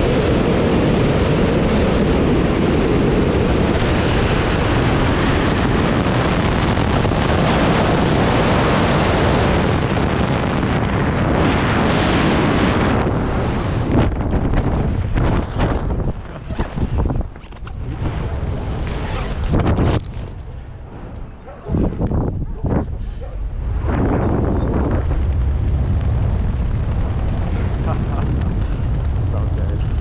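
Wind rushing over a helmet camera's microphone in wingsuit flight, loud and steady. About halfway through, once the parachute is open, it turns gusty and uneven with short quieter lulls, then settles back into a steadier rush near the end.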